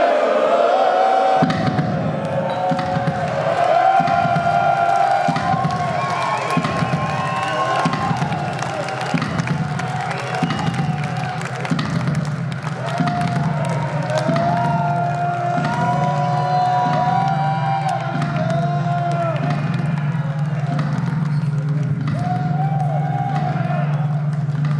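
Live band music and crowd noise at the close of a loud rock set. Wavering held tones sit over a steady low drone, with crowd cheering and a regular thump a little more than once a second.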